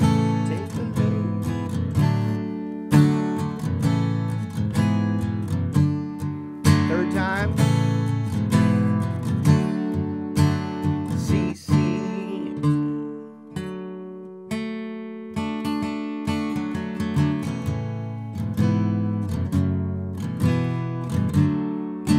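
Steel-string acoustic guitar, capoed at the second fret, strumming a steady chord progression with the rhythm kept going throughout.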